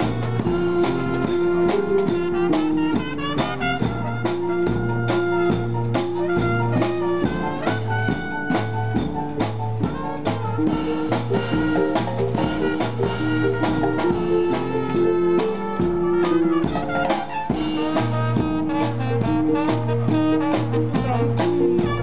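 Youth wind band playing a lively tune: trumpets, trombones and saxophones with clarinets over a steady drum beat and a repeating bass line.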